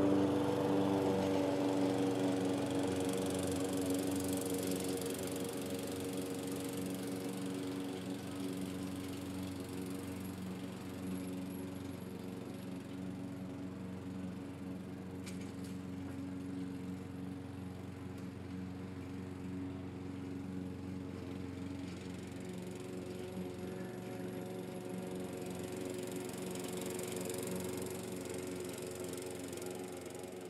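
A steady small-motor drone, like a lawn mower running at a distance, with a constant pitch. It is a little louder at the start and settles to an even level.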